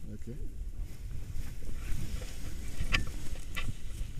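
Wind buffeting the camera microphone as a steady low rumble. Two sharp clicks come near the end.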